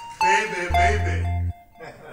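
Background film music: deep synthesised bass notes held for most of a second each and repeating, with short bell-like chime notes over them. A wavering voice sounds over the music about half a second in.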